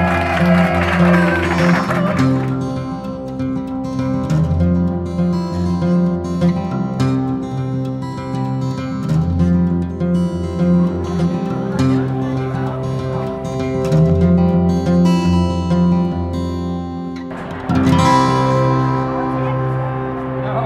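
Acoustic guitar music: plucked notes over a repeating low bass line. Voices are heard over it briefly at the start and again after a sudden change near the end.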